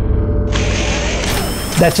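Transition sound effect for an animated logo: a rushing, swelling whoosh over a low rumble, growing brighter in two steps, about half a second in and again past the middle. A man's voice starts near the end.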